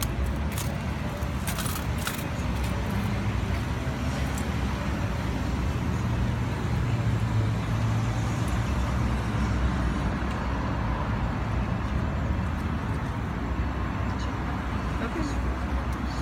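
Steady low rumble of a car engine running at idle. A few faint clicks come in the first couple of seconds.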